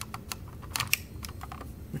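Small plastic clicks from a wall thermostat's slide switches and buttons being worked, several in quick succession, as the system is switched from cool to off.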